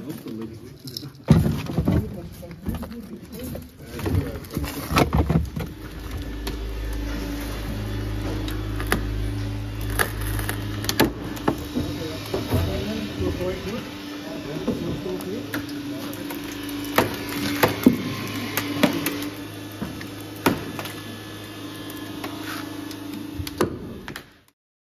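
Vehicle extrication work on a crashed car: sharp cracks and knocks of breaking glass and metal, and a steady motor hum of rescue equipment from about six seconds in.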